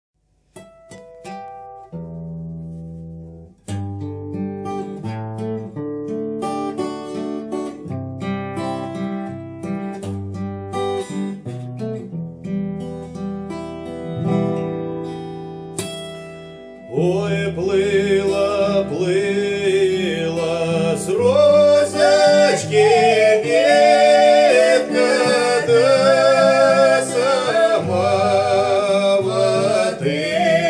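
Acoustic guitar (a Crafter) playing the opening of a Russian Cossack folk song; about two-thirds of the way in, a man and a woman start singing together over the guitar, and the music gets louder.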